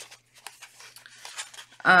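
Sheets of printed cardstock and paper rustling faintly as hands shuffle through a stack of them, in short irregular scrapes and flicks. A woman's voice comes back in near the end.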